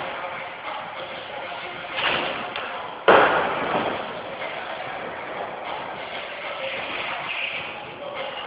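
Skateboard wheels rolling across the ramps, with a sharp, loud clack of the board striking the surface about three seconds in that echoes through the large hall.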